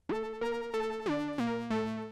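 Monophonic Reaktor 5 synthesizer playing a tense, edgy melody back from the piano roll. It is a run of short, bright notes that steps down in pitch several times through the second half.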